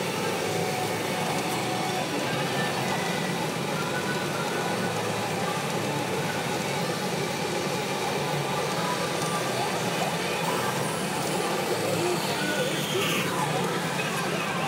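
The steady, loud din of a pachinko parlor: many machines running at once, their balls rattling and their electronic effects sounding, in one continuous wash of noise.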